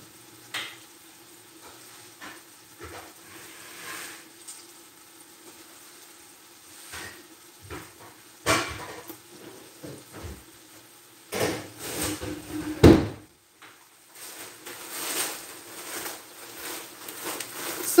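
Onions simmering faintly in a stainless stockpot, under scattered knocks and clatters of a freezer door and containers being opened, shut and handled off to one side. The loudest knocks come about 12 to 13 seconds in.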